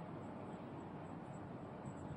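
Faint, steady room tone with a light hiss and no distinct sound events.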